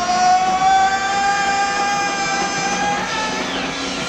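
Live indie rock band music: one long high note is held for about three seconds, slowly rising in pitch, over the band.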